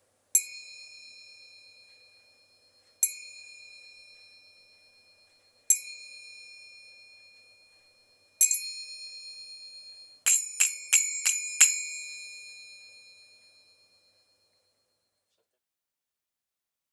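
A pair of small brass finger cymbals struck together four times, a little under three seconds apart. Each strike rings on with several high tones and slowly fades. Then comes a quick run of about five strikes, and the ringing dies away a couple of seconds later.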